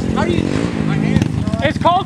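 Honda Grom mini bike's single-cylinder engine, through an aftermarket exhaust, running as the bike rides past and away, with people's voices over it in the second half.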